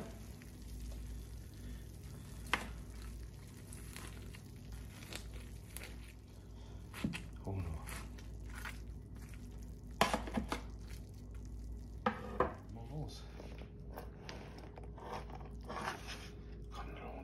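Scattered crunches and a few sharp clicks as a metal spatula and fingers work at the crisp baked-cheese crust of cannelloni in a stainless steel pan.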